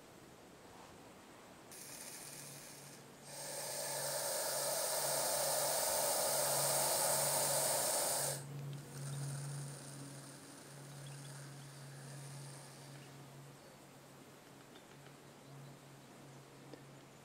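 Black-phase eastern hognose snake hissing in a defensive display, forcing air in and out of its lungs to frighten predators. A short, fainter hiss comes first, then one long, loud hiss of about five seconds, then several weaker, broken hisses. A faint low hum comes and goes underneath.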